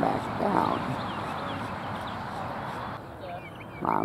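Outdoor ambience: a steady rushing background with faint, short rising chirps of birds. The background drops abruptly about three seconds in.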